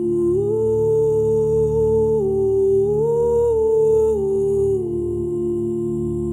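An a cappella vocal ensemble humming without words: one voice carries a slow melody in held notes, stepping up and down, over a sustained low hum from the other singers.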